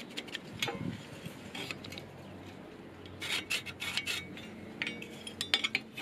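Pencil lead scratching on a steel square tube as a line is marked against a combination square, with the metal rule sliding and knocking on the steel. Short, irregular scraping strokes come in a busier cluster about three seconds in and again near the end.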